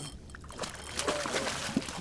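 Water splashing and sloshing, with a few sharp knocks, as a big snapper is scooped into a landing net at the side of a boat. A voice calls faintly a little after halfway.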